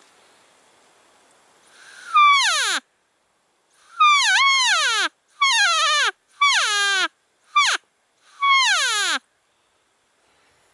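Cow elk call blown six times in a row, loud and close, imitating a cow elk's mew: each call is a whine that slides steeply down in pitch, lasting about a second; the fifth is a short chirp.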